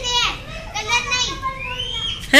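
Children's voices at play: a girl calling out in three short, high-pitched calls, the last one rising near the end.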